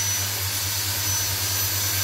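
Steady background hum and whir of a running machine, with a faint high-pitched whine over it.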